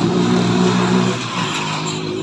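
An engine running close by, loudest in the first second and easing slightly after.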